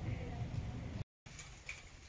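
Street background noise with a low rumble, cut off suddenly about a second in, then fainter outdoor background noise.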